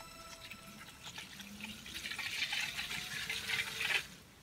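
Water splashing and bubbling inside a clear acrylic PC water-cooling reservoir as its pump circulates the coolant, with air bubbles churning through the chamber. The splashing grows louder over the last couple of seconds.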